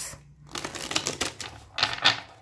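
Tarot cards being handled on a table: a run of quick papery clicks and rustles from about half a second in, with a louder snap near the end.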